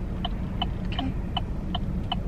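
Car turn-signal indicator ticking at an even pace, a little under three ticks a second, over the low road and engine rumble inside the cabin.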